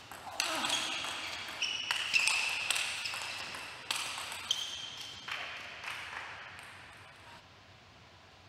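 Table tennis rally: the ball clicks sharply off the bats and table in a quick exchange of about a dozen hits. Several hits are followed by brief high ringing tones.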